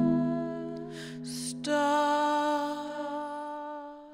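Improvised electric organ and hummed voice holding sustained notes. About a second in a short breathy hiss cuts across, then a new, higher chord comes in and slowly fades out near the end.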